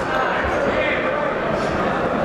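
Crowd voices and shouts echoing around a large sports hall, with a dull thud from the boxing ring about half a second in.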